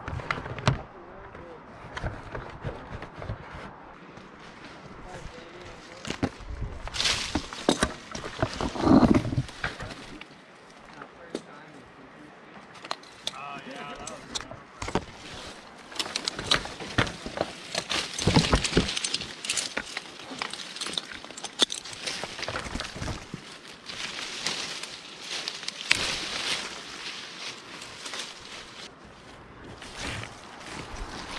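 Leaves and branches rustling and brushing against a tree climber's helmet, with irregular knocks and clatter of climbing gear as he moves through the canopy; the handling is busiest in the middle of the stretch.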